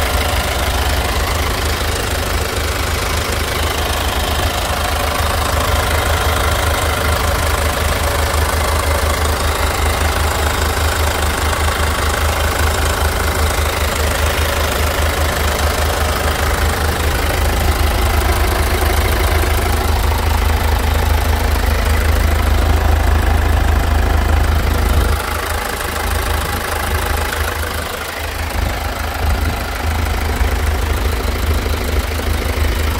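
A 2014 Hyundai Santa Fe's engine idling steadily, heard close up in the open engine bay.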